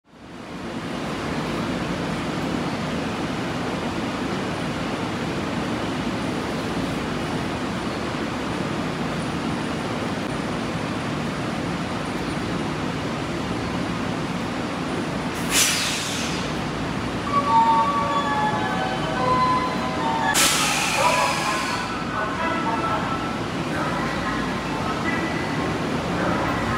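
Tokyo Metro 02 series subway train standing at an underground platform, with a steady rushing hum from the train and station. Two short sharp hisses of air break in, about halfway through and again a few seconds later.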